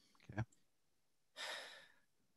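A man's faint breath on a video call: a short soft sound just after the start, then an audible breath lasting about half a second, about one and a half seconds in, as he pauses between remarks.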